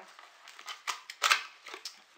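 Small cardboard cosmetic cream boxes handled in the hands, rubbing and tapping against each other: a few short scrapes and taps, the loudest a little past halfway.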